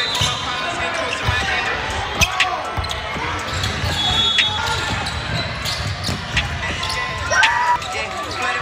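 Live basketball game sound in a gym: a ball dribbling on the court and sneakers squeaking, with voices in the background. The squeaks come in short bursts about four seconds in and again near the end.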